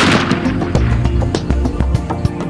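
A single rifle shot right at the start, its report ringing out for about half a second, over loud background music.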